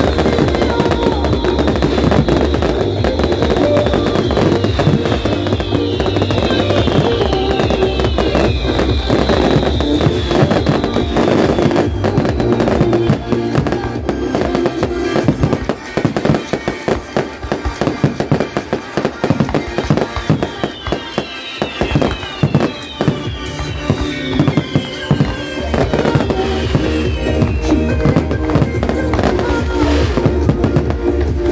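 Fireworks display, with many aerial shells banging and crackling in quick succession over loud music. Around the middle the music falls back and the rapid bangs stand out.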